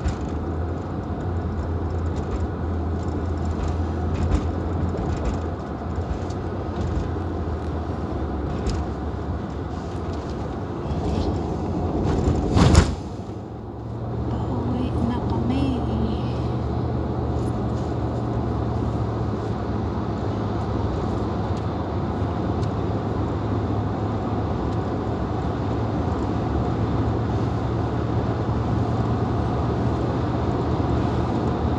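Car running on the road, heard from inside the cabin: a steady low engine and road hum that steps up in pitch a little past the middle. There is one brief, loud burst of noise shortly before that.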